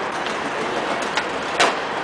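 Outdoor skateboarding sounds on a paved square: a steady background hiss with a few short, sharp clacks, the loudest about one and a half seconds in.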